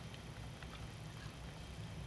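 Faint ticking of a clock in a quiet room, a few soft ticks over a steady low hum.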